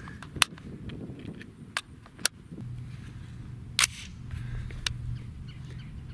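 Sharp metallic clicks of an AR-15 and its magazine being handled as the next magazine is loaded: about six separate clicks, the loudest about half a second in, just after two seconds and near four seconds in. A low steady hum comes in about two and a half seconds in.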